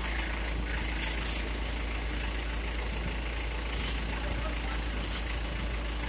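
Diesel engine of an Ajax self-loading concrete mixer running steadily at a low, even hum.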